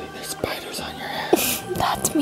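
Soft, breathy whispering, loudest near the end, over quiet background music with long held tones.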